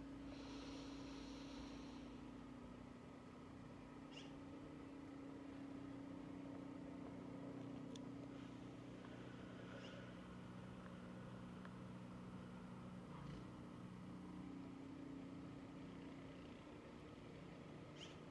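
Near silence with a faint steady hum underneath; a slow, deep breath in is faintly heard in the first couple of seconds, the start of a paced box-breathing count.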